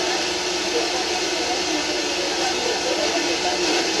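Steady static hiss from an analog TV set's speaker, with a faint steady tone under it. The TV is tuned to a weak, distant channel 3 signal arriving by sporadic-E skip, and the sound has dropped out into noise.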